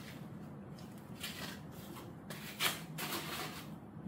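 Tissue paper rustling in a shoebox in several short bursts, mostly in the second half, as a shoe is pulled out of it.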